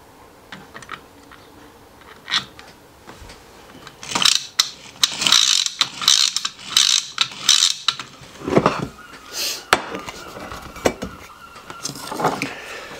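3D-printed plastic parts being handled and fitted together by hand: a few light clicks, then from about four seconds in a run of short scraping rasps, roughly two a second, with sharp clicks among them.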